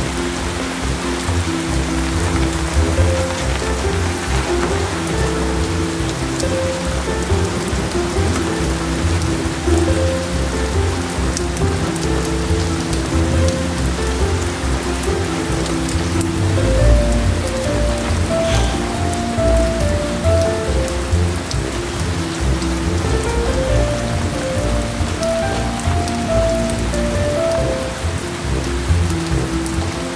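Steady rain falling on wet concrete and gravel, with background music playing a slow melody of held notes.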